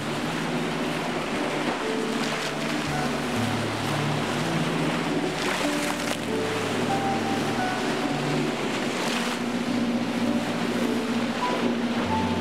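Slow instrumental music of long held notes, its low notes stepping from one pitch to the next every few seconds, over sea waves washing in and breaking, with a louder surge of surf every three or four seconds.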